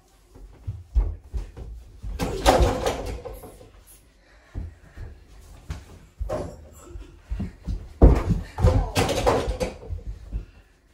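A mini basketball game played indoors: thuds of feet, bodies and a soft ball on the floor, with two loud crashes about two and eight seconds in as the ball and the players bang into the doors and their over-the-door mini hoops.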